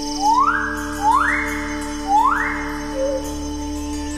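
A male bird-of-paradise calling three times, about a second apart: loud, harsh calls that each sweep up in pitch and then hold briefly. A steady music drone runs underneath.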